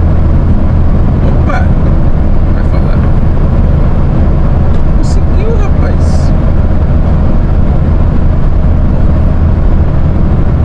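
Steady low drone of a Mercedes-Benz Atego 3030 truck's diesel engine and road noise heard from inside the cab while cruising on the highway, with a few short ticks.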